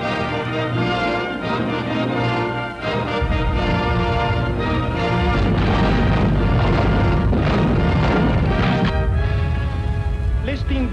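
Orchestral film score with brass. About three seconds in, a loud low rumble with booms joins the music and carries on under it.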